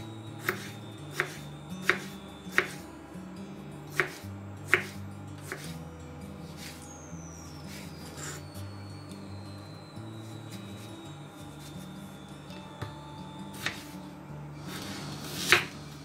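Kitchen knife cutting through a tomato on a wooden cutting board. The blade taps sharply against the board about once every 0.7 seconds for the first six seconds, then only a few scattered taps later, with a louder one just before the end.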